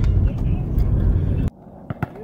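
Low road and engine rumble heard inside a moving car's cabin, cut off abruptly about three-quarters of the way in. What follows is much quieter, with a single basketball bounce on an outdoor court near the end.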